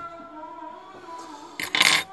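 A brief, loud clinking clatter of small hard parts near the end, as parts of an iPhone 5s being repaired are handled, over faint background music.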